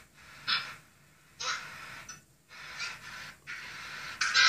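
A person breathing close to the microphone: four short, faint hissing breaths about a second apart.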